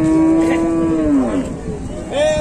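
A cow mooing once, a single long call of about a second and a half held at a steady pitch and dropping off at the end.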